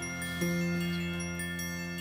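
Background music of bell-like chimes: sustained ringing notes layered together, with a new chord struck about half a second in and left to ring.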